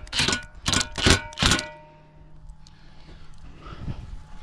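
A 24-volt brushless cordless impact driver run in four short bursts, snugging down a bolt that holds a metal mounting bracket, then stopping.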